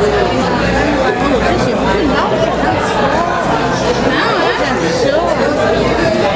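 Many people talking at once close to the microphone: a steady babble of overlapping voices.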